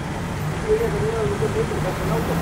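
Indistinct voices in the background over the steady low hum of an idling vehicle.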